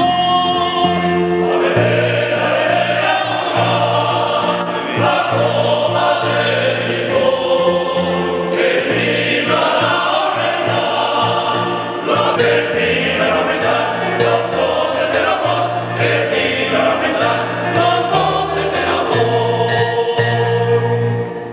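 Male choir and a male soloist singing in a church.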